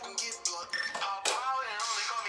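Hip hop track playing, with a male voice rapping over the beat.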